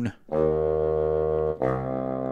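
GarageBand for iPad's sampled bassoon instrument playing a low sustained note, then a second low note held from about a second and a half in.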